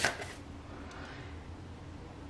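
One last brief scratch of tarot cards being shuffled at the very start, then only a faint steady room hiss while a card is drawn.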